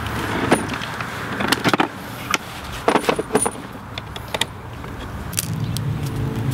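Scattered light clicks and metallic clinks as a paint-spattered field easel and palette are handled and the palette is set down on the easel's frame.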